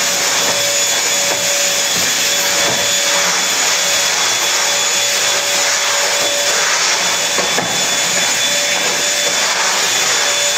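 Vacuum cleaner running steadily, a loud even rush of air with a constant motor whine, picking up a mess on the floor.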